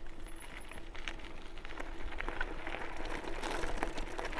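RadMission 1 electric bike climbing under full throttle: tyres crunching and crackling over loose gravel in a stream of small clicks, with a faint steady hum from the rear hub motor through the first few seconds and a low wind rumble.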